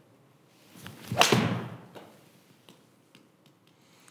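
A Mizuno MP20 MMC iron striking a golf ball, solidly struck: one sharp crack a little over a second in, after a brief swish, with a short ringing tail in the room.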